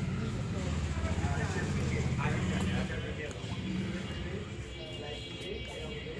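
An engine running with a steady low hum that eases off a little after about three seconds, with faint voices in the background.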